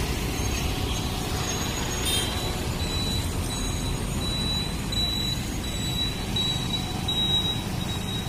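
Road traffic passing close by: a car and motor scooters driving past, a steady rumble of engines and tyres. A thin, high, steady tone runs above it from a few seconds in.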